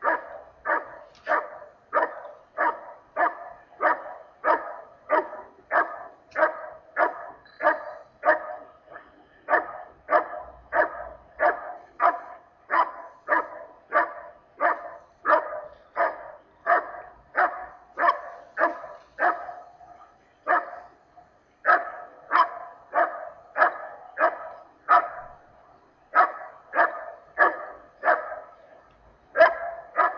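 A dog barking steadily and rhythmically, about two barks a second without let-up, with one brief pause about two-thirds of the way through.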